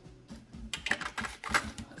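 Unpacking by hand: a run of small clicks and taps in the second half as a cardboard box, foam wrap and a small glass dappen dish are handled.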